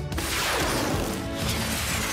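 Cartoon sound effect of a drone being launched: a sudden crash-like burst just after the start that fades over about a second, then a faint falling whistle near the end, over steady background music.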